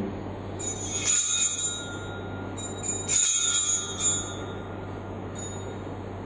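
Altar bells (a set of small hand bells) shaken in two bright ringing bursts, each about a second long, with a faint third touch near the end, marking the consecration and elevation of the host at Mass.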